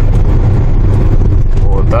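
Steady low rumble of a Daewoo Rezzo LPG minivan driving along, engine and road noise heard from inside the cabin.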